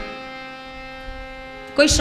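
A steady hum with many evenly spaced overtones, fading slightly, then a woman's voice starts near the end.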